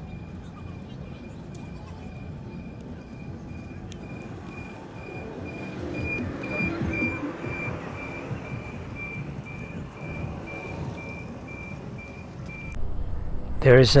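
Riding noise from a kick scooter on park asphalt: a steady rumble of small wheels and wind, with passers-by's voices about six seconds in and a faint chain of short, high beeps repeating throughout. The ride sound cuts off near the end as a narrating voice comes in.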